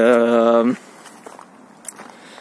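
A man's drawn-out "uhh" at one steady pitch, lasting under a second, followed by faint footsteps on a dirt and rock path.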